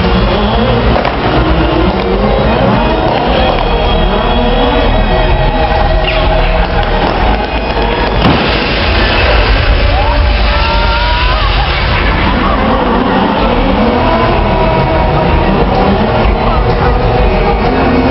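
Stunt cars' engines revving hard and tyres screeching as the cars spin and drift on the tarmac, sending up smoke.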